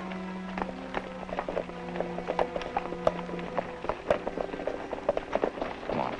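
Background score of sustained string and brass tones over the uneven clip-clop of several horses' hooves.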